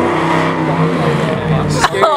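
A car engine running close by, a steady low-pitched hum with voices over it; it breaks off with a sharp click near the end.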